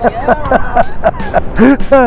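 A person laughing in a run of short rising-and-falling 'ha' sounds, strongest near the end, over background music.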